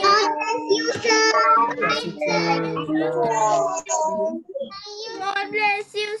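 Several children's voices calling goodbye over one another in drawn-out, sing-song tones, heard over a video call.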